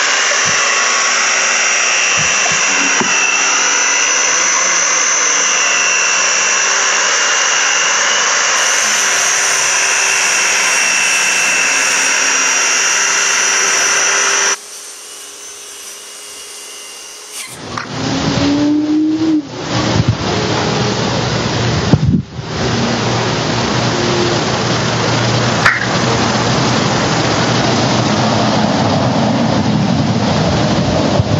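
Circular saw running while it cuts a vinyl floor plank, a loud steady whine for about the first fourteen seconds before it drops away. For roughly the last twelve seconds a loud, even rushing noise with a few sharp knocks takes over.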